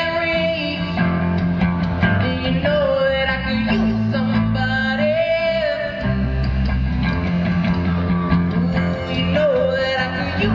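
Live rock band playing: a young male singer holds a wavering melody over electric guitar, bass guitar, keyboard and drums.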